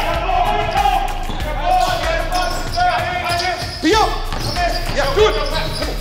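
Basketball shoes squeaking on a hardwood court as players run and cut, in many short, sharp squeals, with a basketball bouncing and thudding on the floor. The sound rings in a large gym.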